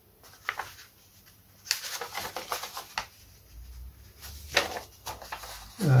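Paper rustling and crackling as an old folded instruction leaflet is unfolded and handled, in short spells about two seconds in and again around four and a half seconds.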